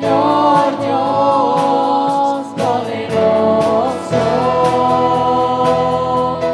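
Live worship band playing a praise song: voices singing together over guitars, keyboard and a drum kit, with a steady drum beat.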